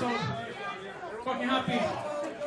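Speech only: a man talking into a microphone over the chatter of a crowd in a large room.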